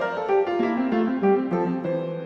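Instrumental background music: a melody of short plucked or struck notes stepping up and down.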